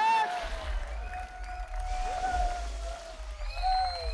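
A man's long, drawn-out yell as a bucket of water is dumped over his head, opening with a splash. A low rumble and crowd noise run underneath.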